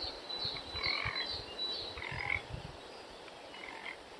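A series of short animal calls at irregular intervals, bunched in the first two and a half seconds and sparser after, over a faint background.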